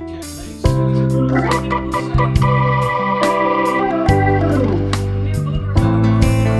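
Instrumental music with held keyboard-like chords over a steady beat, growing louder and fuller about half a second in.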